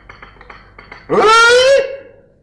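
Light clinks of porcelain as tea is poured from a china teapot into a cup. About a second in, a loud drawn-out voice call that rises in pitch and then holds.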